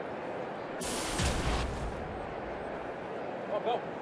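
A broadcast graphics sound effect, a whoosh with a low rumble lasting about a second, starting just under a second in, over the steady murmur of a ballpark crowd.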